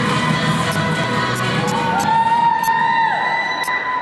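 An audience in a hall cheering and applauding, with children's voices shouting. One long high-pitched shout rises above the crowd about two seconds in.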